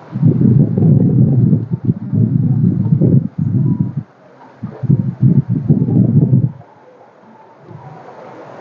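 Wind buffeting the microphone: a loud, irregular low rumble in gusts that breaks off briefly about four seconds in and dies away near the end.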